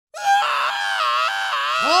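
A teenage boy's long, high-pitched scream, voiced by a male voice actor, starting abruptly and wavering in pitch without a break; a deeper voice starts speaking right at the end.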